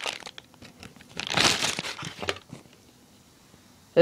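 Clear plastic bag crinkling as a rubber training knife is pulled out of it, in two bursts: a short one at the start and a longer one about a second in.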